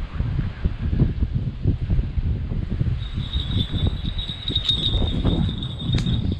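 Wind buffeting the microphone as a gusty, uneven rumble. From about halfway a thin, steady high ringing tone joins it.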